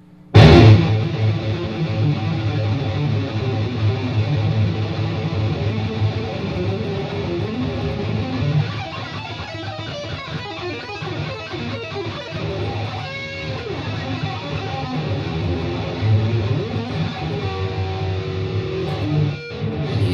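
Fast electric guitar solo played on a Stratocaster-style guitar through an amplifier. It opens with a sudden loud attack about half a second in, runs on in dense rapid lines, and has a held note near the end.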